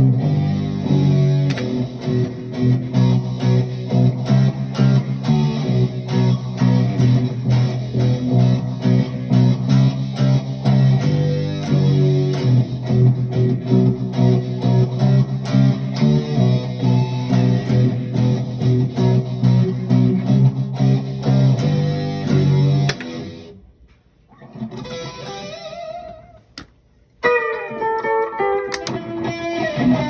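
Jackson Kelly electric guitar with Floyd Rose tremolo played through a pedalboard, a low riff repeated in a steady rhythm. The riff stops about 23 seconds in and fades to near silence, then higher single notes start near the end.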